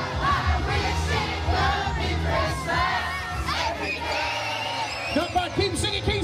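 Crowd singing and shouting along loudly to a Christmas song played over a PA, many voices at once over a steady bass backing track.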